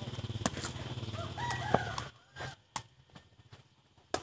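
A rooster crowing about a second and a half in, over a steady low hum that cuts off about two seconds in. Sharp knocks of the sepak takraw ball being kicked come through at intervals.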